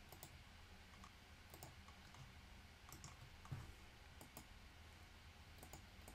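Near silence: room tone with a few faint, scattered computer mouse clicks.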